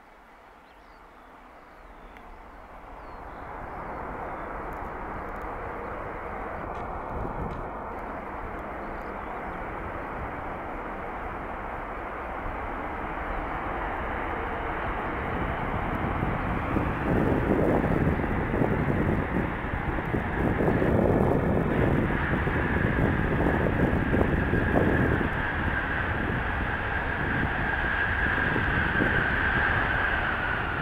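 Jet engines of a Boeing 737-800 rolling out on the runway after landing, a steady roar that grows much louder as the airliner comes closer. In the second half a steady high engine whine rises above the roar and dips slightly at the very end.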